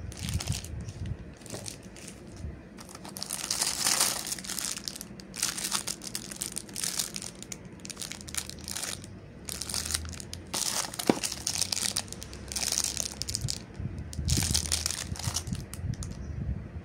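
Clear plastic packaging bags crinkling in a hand as the wrapped items are handled. The rustling comes in irregular bursts.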